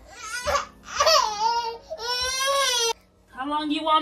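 A nine-month-old baby girl crying and fussing in a string of high-pitched wails, the longest held for about a second before it breaks off for a moment near the end. She is crying to be picked up and carried.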